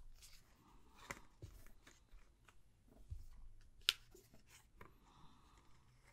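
Tarot cards being handled and gathered together, a few faint clicks and soft rustles, the sharpest click about four seconds in.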